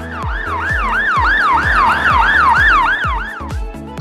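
Fast yelping emergency siren sound effect, about three and a half wails a second, over background music with a steady beat. The siren stops about half a second before the end.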